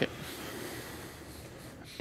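A quiet, steady hiss of room noise with no distinct event, between bursts of speech.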